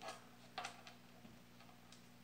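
Near silence in a pause of solo violin playing: the last note dies away at the start, then only a few faint ticks over a low steady hum.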